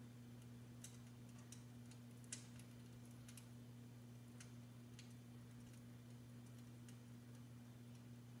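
Faint, irregular crackling pops, about one a second with the sharpest a little over two seconds in, over a steady low electric hum: the simulated crackling-fire sound of a duraflame electric log set.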